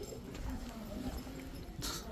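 Footsteps on a hard wooden floor as the camera-holder walks, with faint voices in the background and a short burst of rustling handling noise near the end.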